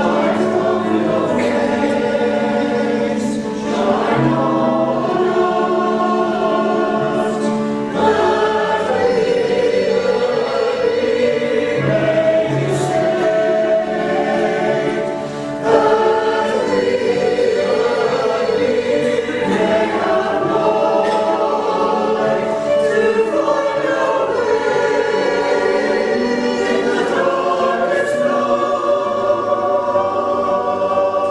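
Mixed-voice choir, a Salvation Army songster brigade, singing in harmony: held chords in phrases of about four seconds each.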